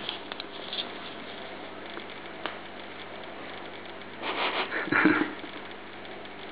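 Steady low hiss with a few faint clicks, then about four seconds in a short breathy sound from a person, lasting about a second.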